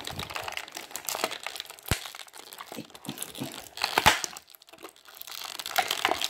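Clear plastic blister packaging crinkling and crackling as hands flex and twist it to free a toy accessory, with sharp clicks and snaps of the plastic; the loudest snap comes about four seconds in.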